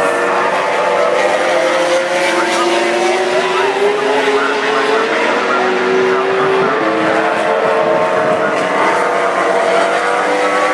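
MotoGP race bikes running on a wet circuit, several engine notes overlapping and slowly rising and falling in pitch as they pass.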